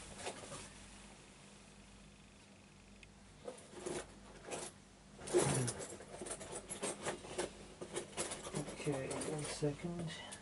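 Small metal clicks and scrapes from handling a brass Yale euro-profile lock cylinder. A few separate clicks come about three and a half seconds in, then quick, irregular clicking from about five seconds on.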